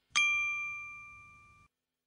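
A single bell-like ding, struck once and ringing out with a clear pitch, fading away over about a second and a half.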